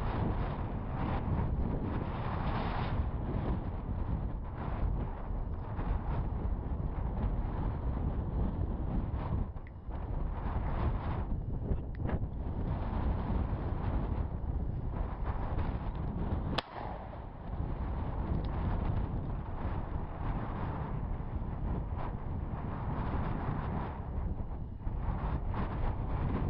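Wind buffeting the microphone of a body-worn camera outdoors, a steady low rumble throughout. A single sharp click cuts through about two-thirds of the way in.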